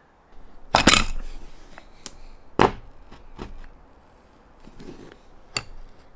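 A few separate knocks and clinks of a caulking gun and metal roof-rack brackets being handled and set down on the truck cap, the loudest about a second in and the others spread through the rest.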